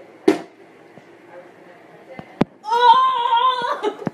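A tossed plastic bottle lands with a thud just after the start, and a sharp knock follows about halfway through. Then a person gives one long shout lasting about a second, the loudest sound.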